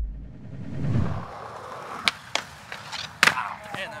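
A skateboard makes a low rumble over concrete, then its board clacks sharply several times against hard surfaces, loudest a little after three seconds in. A person laughs at the very end.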